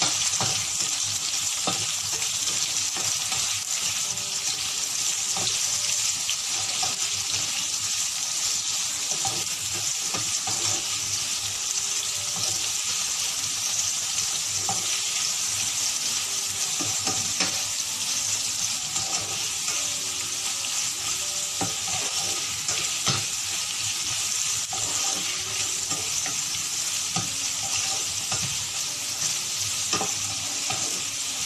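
Sliced onions sizzling steadily in hot oil in a frying pan, with a spatula stirring them and ticking against the pan now and then.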